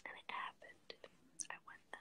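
A girl whispering a few short, quiet words, with sharp hissing s-sounds.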